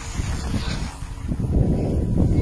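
Wind rushing over the microphone of a camera carried by a skier moving downhill, a rough low rumble that builds up about a second and a half in as speed picks up.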